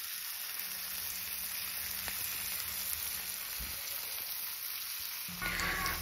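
Two pomfret shallow-frying in melted butter with curry leaves in a non-stick pan over a low flame, making a soft, steady sizzle.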